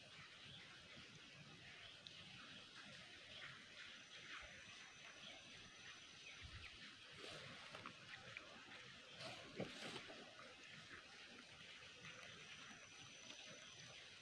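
Near silence: faint outdoor background with scattered soft clicks and rustles, the loudest a brief small click about two-thirds of the way through.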